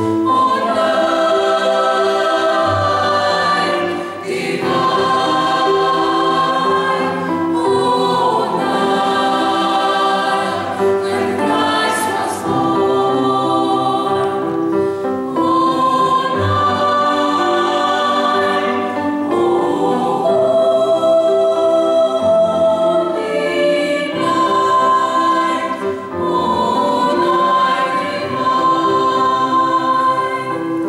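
Mixed choir of men's and women's voices singing in parts, holding long chords in phrases with brief breaks between them.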